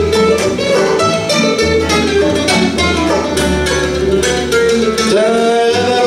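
Acoustic bluegrass band playing a fast tune: picked acoustic guitar, banjo and mandolin over upright bass, with fiddle. About five seconds in, a note slides upward.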